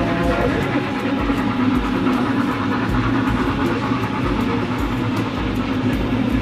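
Model BR 86 steam locomotive and its string of ore wagons running along the layout track, a steady rolling hum with faint, evenly repeated clicks, heard against background music.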